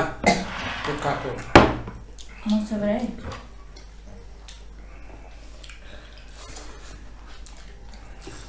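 Tableware clattering at a meal: a sharp knock of a dish or glass on the table about one and a half seconds in, amid brief low voices, then a quieter stretch with faint clinks of eating.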